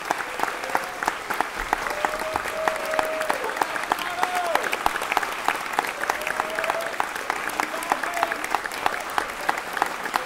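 Concert audience applauding: dense, steady clapping, with a few voices calling out over it.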